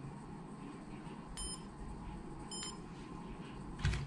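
DPM-816 coating thickness gauge beeping twice, short high beeps about a second apart, as it is held to a test piece. A soft low thump follows just before the end.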